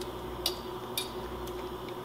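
Two light, sharp clicks about half a second apart as a hand works in a slow cooker's stoneware crock, over a steady faint hum.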